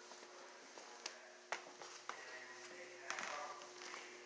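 Quiet room with a steady hum, soft footsteps on a hard tile floor and a few sharp clicks from the handheld camera. Faint voices come in around three seconds in.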